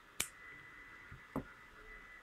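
A sharp click of scissors snipping a crochet thread, then a fainter click about a second later.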